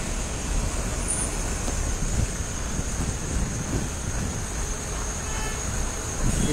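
Steady traffic noise from a jammed road: a queue of cars, trucks and buses standing and idling.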